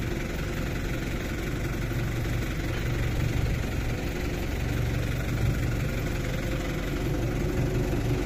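An engine idling steadily, a low hum that holds one pitch.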